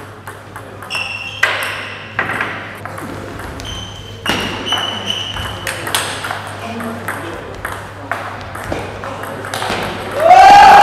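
Table tennis rally: the ball clicks sharply off the bats and the table, about one or two strikes a second, some with a short high ping.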